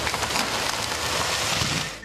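Hydro-Ax 611EX feller buncher felling trees: a loud, steady, crackling rush from the saw head and breaking branches over the machine's low engine hum, cutting off suddenly near the end.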